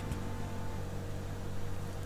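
Steady low mechanical hum with a faint even hiss: room noise, without a distinct event.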